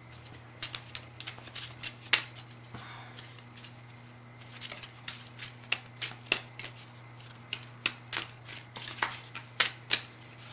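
A deck of playing cards being shuffled by hand: irregular sharp snaps and slaps of the cards, some in quick runs, over a steady low hum.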